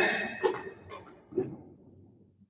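A player's footwork on an indoor badminton court: a few short shoe scuffs and footfalls on the court floor, one sharp sound about half a second in and a duller one about a second and a half in, fading out.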